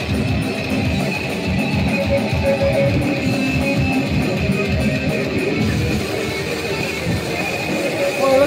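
Live thrash metal: distorted electric guitars, bass and fast drums playing an instrumental passage with no vocals.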